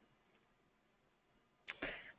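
Near silence: a pause in the call audio, with a faint short click near the end.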